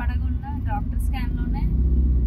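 Steady low rumble of a car being driven, heard from inside the cabin, under a woman's talking.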